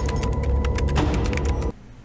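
Film-trailer sound design under a title card: a steady low drone with a held tone and a run of rapid, irregular clicks. It cuts off abruptly shortly before the end.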